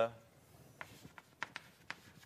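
Chalk on a blackboard: a quick series of short taps and scratches as a word is written, starting a little under a second in.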